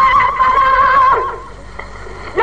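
A man singing a Sindhi naat holds a long, slightly wavering high note, which falls away about a second and a half in, leaving a short lull.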